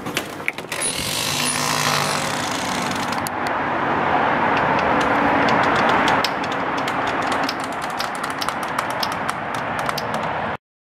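A vehicle going by on the street: a hiss of tyres and engine that swells over several seconds and fades, with light clicks near the end.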